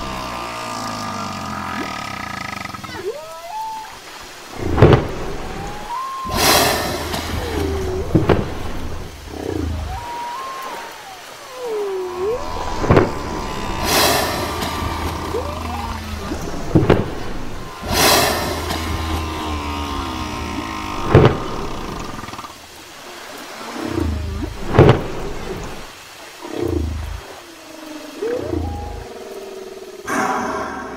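Humpback whale song: low moans and whoops that slide up and down in pitch, broken by several sudden loud blasts. Sustained tones from a music track lie underneath.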